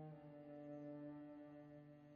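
Cello and violin holding soft sustained bowed notes in a quiet passage of a piano trio; the low held tone shifts slightly about a quarter second in.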